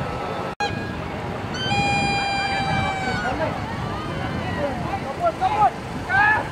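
Crowd of football spectators shouting and chattering, with a long high note held for about a second and a half from the stands, then short yelps near the end. The sound cuts out for an instant just after the start.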